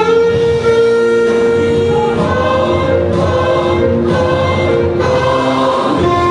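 Alto saxophone playing a slow melody of long held notes.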